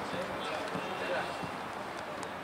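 Indistinct voices of players and match officials on an outdoor pitch, with a few soft thuds of a football bouncing on artificial turf.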